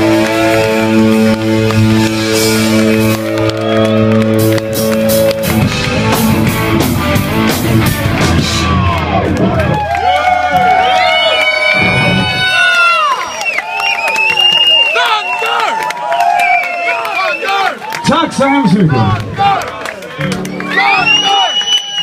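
A live rock band holds a sustained chord on electric guitar and bass over drums, then closes the song with a run of rapid drum and cymbal hits. From about ten seconds in the crowd cheers, shouts and whistles.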